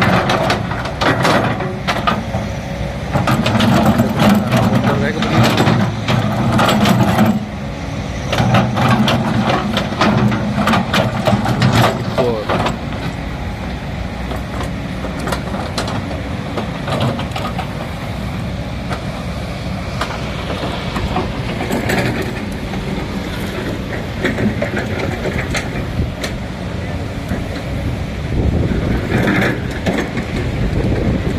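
Kobelco hydraulic excavator's diesel engine working under load, with rocks clattering in its skeleton bucket during the first dozen seconds; after that the engine runs on more steadily and quietly.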